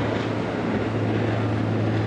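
A motorboat passing at speed: a steady engine drone with a constant low hum.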